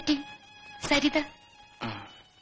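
Film dialogue: short spoken phrases from a fairly high-pitched voice, about a second apart, over faint sustained background music.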